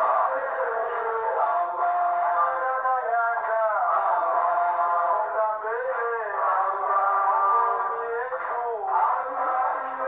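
Voices singing a song in unison, holding long notes and sliding between them, heard through a television's speaker.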